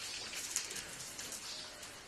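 Thin Bible pages being turned by hand: a soft papery rustle with many small crackles.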